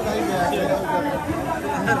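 Several people talking over one another in a small group: overlapping chatter with no single clear voice.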